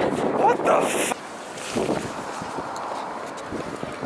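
Wind rushing over the microphone, with a man's wordless voice over it for about the first second. Then it cuts abruptly to a quieter, duller wind noise.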